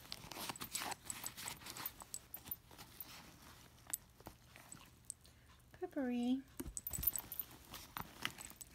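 A hand rummaging among small items inside a handbag: rustling and light clicks of plastic bottles and cosmetics knocking together, busiest in the first three seconds. A short low 'mm' from a woman's voice about six seconds in, then a dull thump.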